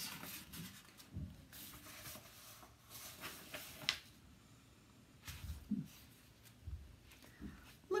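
Faint rustling and a few light knocks as a paperback book is handled and its pages are shifted.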